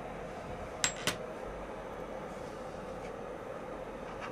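Two light, sharp clicks of metal tweezers about a second in, a fifth of a second apart, over a steady faint hum.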